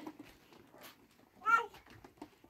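A goat bleats once, briefly, about one and a half seconds in.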